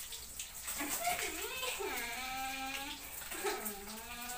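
Sizzling and crackling from a wok frying fish over a wood fire, a steady hiss throughout. Over it, a voice makes a drawn-out held sound in the middle and rises again near the end.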